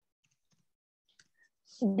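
Near silence with a few faint clicks, then a woman starts speaking near the end.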